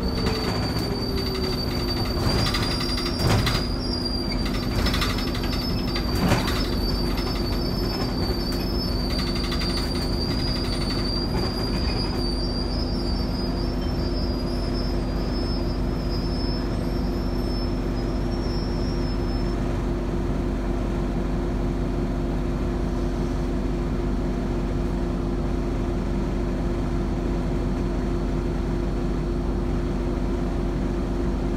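Inside an MBTA RTS transit bus: the engine note drops in the first second or so, then holds a steady drone. Over it a thin high-pitched squeal runs for roughly the first twenty seconds, with a few rattles and knocks of the body in the first several seconds.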